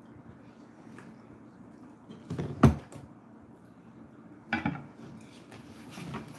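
Things being handled and set down on a table: a sharp knock about two and a half seconds in, then a lighter clatter near five seconds.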